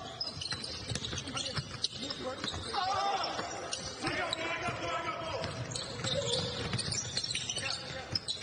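A basketball being dribbled on a hardwood court, sneakers squeaking as players move, in a big echoing gym. A voice calls out on court for a few seconds in the middle.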